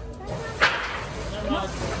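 A single sharp crack about half a second in, with voices in the background.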